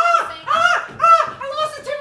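A person's high-pitched, sing-song vocalizing: three short rising-and-falling calls about half a second apart, then a held note near the end.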